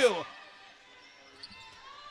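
Faint basketball dribbling on a hardwood court, with a single soft bounce standing out about a second and a half in, over quiet arena background noise.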